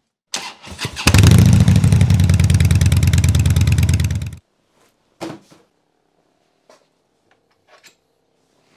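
Motorcycle engine starting: a brief sound, then about a second in the engine catches and runs loud for about three seconds before cutting off abruptly. A single knock follows shortly after.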